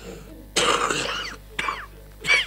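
A man sobbing, close to the microphone: a loud choked sob about half a second in, then a shorter cry that falls in pitch near the end.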